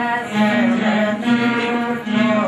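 Carnatic music played on several veenas together, the melody moving between held notes with sliding bends in pitch.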